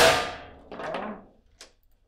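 A foosball shot slamming into the goal: one loud sharp bang that rings briefly, then a softer clatter about a second in as the ball settles, and a short click.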